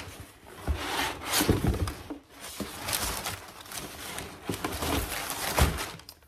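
Crumpled brown kraft packing paper rustling and crinkling in irregular bursts as it is pulled out of a cardboard shipping box, with a dull bump near the end.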